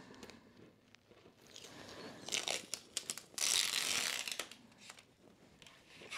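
Blue painter's tape being peeled off an acrylic sheet: a few short rips, then a longer one about three and a half seconds in, with light clicks from the sheet being handled.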